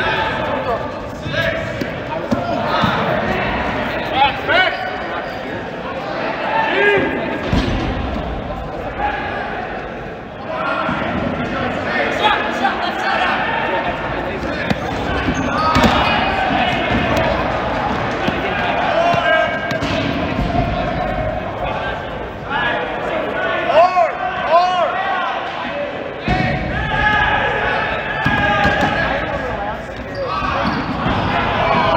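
Dodgeballs thudding and bouncing on a hard gym floor several times, under players' shouts and calls in a large, echoing gym.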